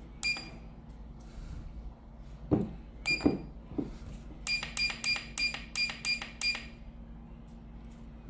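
Electronic key beeps from a YHSINO YH800-3P digital readout as its keypad buttons are pressed: a single short beep, another about three seconds in, then a quick run of about eight beeps at roughly four a second. A few soft knocks of fingers on the keys come just before the run.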